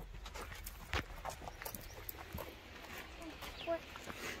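Footsteps on a dirt and gravel trail: scattered light steps and scuffs, the sharpest about a second in.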